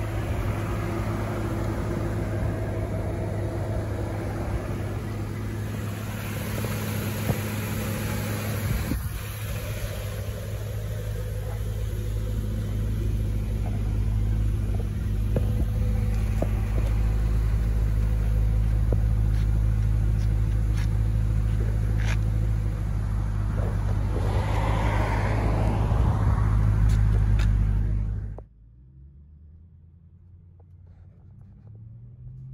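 BMW M3's 4.0-litre V8 idling, heard from outside the car as a steady low hum that grows louder over the second half. It cuts off suddenly near the end, leaving a much quieter background.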